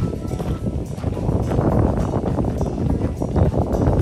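Wind buffeting the microphone: a loud, gusting rumble that rises sharply at the start and stays heavy throughout.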